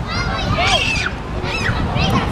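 Several children's high-pitched shouts and squeals overlapping, short rising and falling cries over a steady low rumble.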